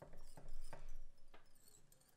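A few soft clicks and rustles of hands working thread and material at a fly-tying vise, about four light handling noises in two seconds.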